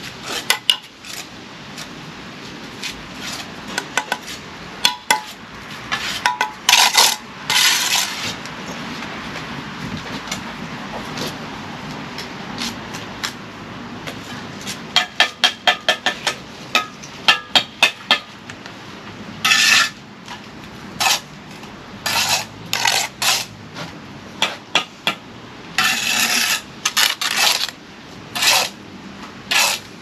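Steel brick trowels working mortar on a brick wall: repeated metallic scrapes and clinks of the blade on mortar and brick, with a quick run of taps about halfway through as bricks are tapped down into their bed.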